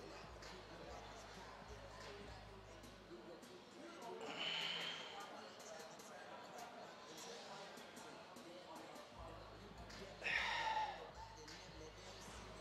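Two short, forceful breaths from a lifter squatting a barbell, about four seconds in and again near the end, over faint gym room sound.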